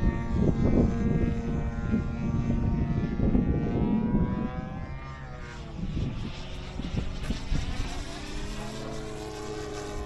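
Radio-controlled electric ducted-fan jet flying, its whine sliding down in pitch and then rising again, with wind rumbling on the microphone, heavier in the first half.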